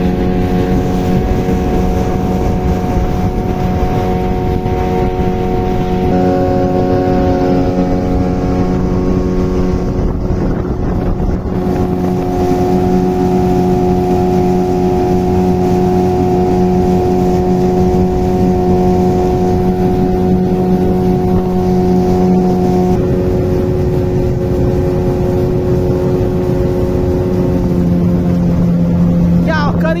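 A small motorboat's engine running at a steady cruising speed under way. Its pitch shifts slightly a few times and drops a little near the end.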